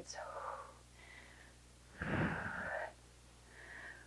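A woman breathing out hard during exercise, close to a clip-on microphone: a short exhale at the start, a louder one about two seconds in with a low buffeting of breath on the mic, and a faint one near the end.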